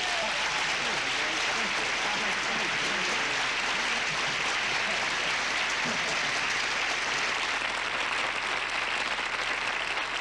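Studio audience applauding steadily after a barbershop quartet's humming number, with a few voices mixed in.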